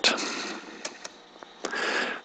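A quiet pause with faint hiss, a few soft clicks, and a breath near the end.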